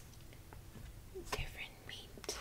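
Mostly quiet, then a short soft whisper about one and a half seconds in.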